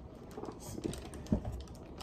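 Dry cereal pieces dropping into a bowl as the box is tipped, heard as a scattering of faint, light clicks.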